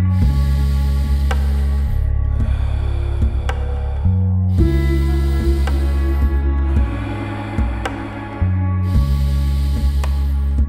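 Slow, rhythmic breathing, in through the nose and out through the mouth, each breath about two seconds long with a short pause between. It sits over calm background music with held low notes and an occasional plucked note.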